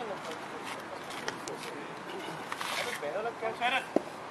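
Distant voices of cricket players calling across the field during play, with a clearer pitched call near the end. A single sharp knock comes just before the end.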